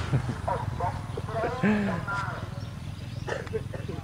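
Faint, scattered distant voices over a steady low hum.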